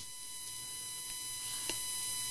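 A pause in the talk filled with faint hiss and a few thin, steady high-pitched tones, with one soft click near the end.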